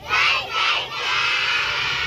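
A large group of young children shouting together: a loud burst right at the start, then a long held shout in unison from many voices.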